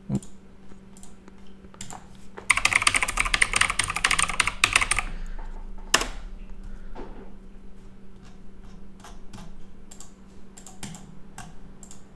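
Quick run of typing on a computer keyboard lasting about two and a half seconds, followed by a sharper single click and then scattered lone clicks.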